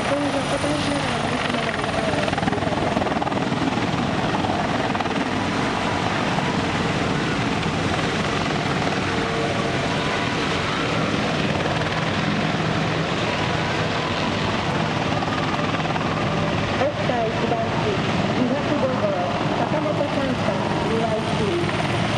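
Several military helicopters, including an AH-1 Cobra and OH-6s, flying low past as a steady rotor and turbine drone. A voice speaks over it near the start and again in the last few seconds.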